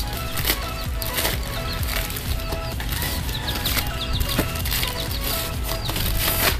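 Plastic mailer bag crinkling and rustling as it is handled and a box is pulled out of it, over background music with short repeated notes.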